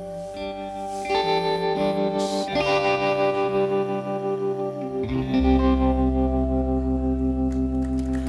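Live band playing: electric guitar through effects over sustained chords, with a deep bass coming in about five seconds in.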